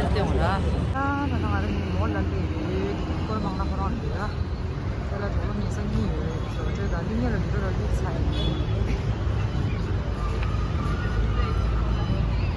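Street traffic rumbling steadily, with several people talking in the background.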